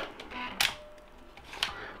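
HP laptop's CD/DVD drive tray being ejected and opened: two short clicks about a second apart as the tray is released and pulled out.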